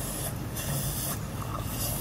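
Surgical suction wand hissing in on-and-off bursts, about three times, as it draws from the operative field, over a steady low hum of operating-room equipment.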